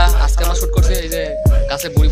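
Hip-hop music with rapped vocals over deep bass hits and quick hi-hat ticks.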